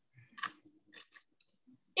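Faint crunching of a crispy, browned piece of sheet-pan bibimbap being chewed: a few short crackles.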